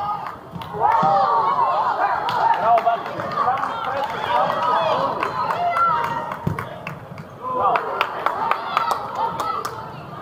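Overlapping shouts of young players and spectators during an indoor futsal game, with sharp knocks of the ball being kicked scattered through.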